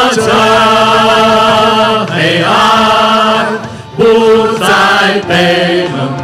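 A worship team of several voices singing a Mandarin praise song in long held notes with vibrato, each line sustained for a second or two with short breaks between.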